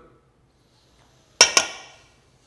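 A metal spoon knocks twice in quick succession against a stainless steel mixing bowl, and the bowl rings briefly after the knocks.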